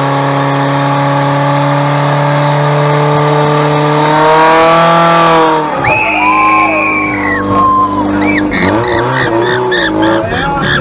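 Portable fire pump's engine running flat out with a steady high drone as it drives water through the attack hoses, revving up slightly and then cutting off abruptly about five and a half seconds in. Once it stops, high calls and shouts follow.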